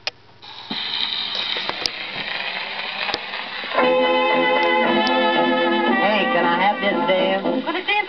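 EMG horn gramophone playing a Brunswick 78 rpm dance-band record: a click as the needle goes down, then surface hiss under a soft introduction, with the full band coming in loudly about four seconds in.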